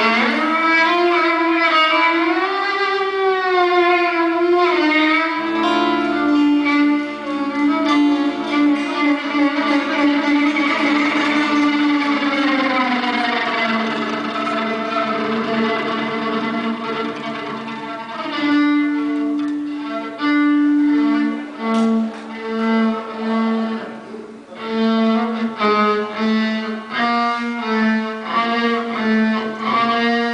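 Live fiddle tune on violin with guitar accompaniment. The fiddle slides between notes in the first few seconds, then holds long notes over a low steady note, and in the second half plays short, clipped notes in a quick rhythm.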